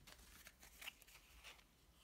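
Near silence, with a few faint soft rustles and ticks of trading cards being handled and slid past one another.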